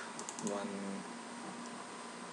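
A few quick computer mouse clicks a quarter of a second in, followed by a brief voiced sound from the presenter, then only faint steady background noise.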